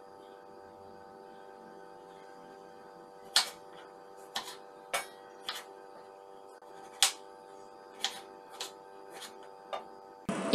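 A kitchen knife chopping tomatoes on a wooden chopping board: about nine sharp knocks of the blade against the board, spaced unevenly, starting about a third of the way in, the loudest two about three and seven seconds in.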